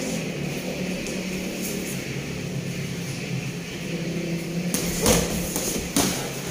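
Boxing gloves striking during sparring: a few short slaps, the loudest about five seconds in, over a steady low hum.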